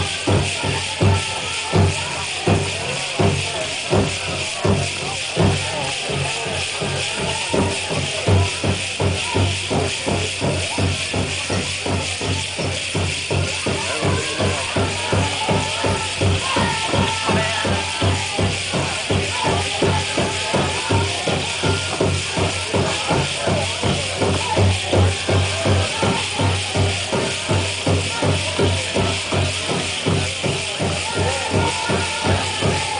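Powwow drum group beating a large bass drum in a steady fast beat and singing a jingle dress song, with loud accented strokes about once a second in the first few seconds. The tin cones on the dancers' jingle dresses rattle along with the drum.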